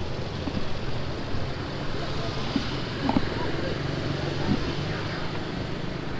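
Street traffic noise, with the low steady hum of vehicle engines as a jeepney passes close by, and faint voices in the background.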